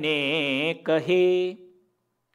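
A man's voice chanting a line of a devotional verse: two long held notes with a wavering pitch, ending about a second and a half in.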